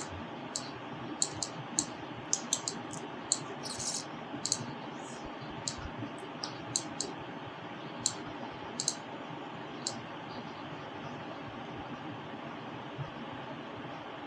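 Irregular, scattered clicks of a computer mouse and keyboard, most of them in the first ten seconds and only a few after that, over a steady hiss of microphone and room noise.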